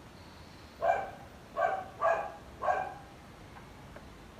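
A neighbour's small dog barking, four barks about half a second apart starting about a second in.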